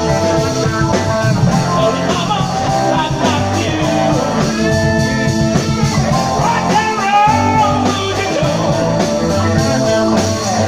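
Live rock band playing: electric guitars, bass, drums and keyboards, with gliding, bent notes in the upper range over a steady bass and drum beat, recorded on a smartphone.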